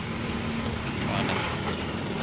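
Truck engine running at low speed, a steady low hum with a few faint clicks and rattles.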